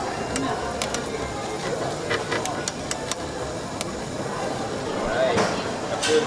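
Restaurant room noise: steady background chatter and hiss, with a scattered series of light clicks and clinks from wooden chopsticks and tableware at the table.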